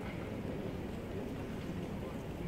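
Steady outdoor urban background noise: a low rumble with a soft hiss above it and no single clear event.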